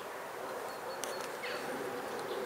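A steady buzzing hum in the background, with a short falling chirp about one and a half seconds in and a few faint clicks.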